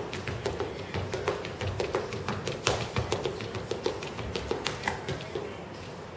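Quick footsteps of sneakers tapping on a wooden gym floor during lateral agility-ladder footwork, about three or four light taps a second in an uneven rhythm that thins out near the end.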